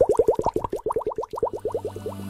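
Cartoon bubble sound effect: a rapid run of short rising bloops, about ten a second, growing fainter toward the end.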